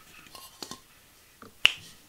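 A few faint taps, then one sharp click about one and a half seconds in.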